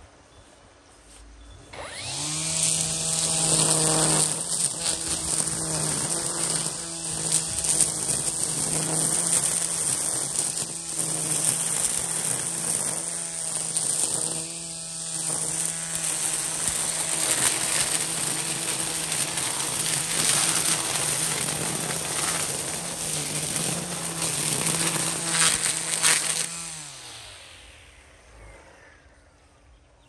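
Battery-powered EGO string trimmer spinning up about two seconds in and cutting through dense weeds, a steady electric hum under the hiss and slap of the line in the foliage, rising and dipping as it bites into the growth. Near the end the motor is released and winds down, its pitch falling away.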